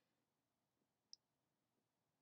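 Near silence, with a single faint, short click about a second in.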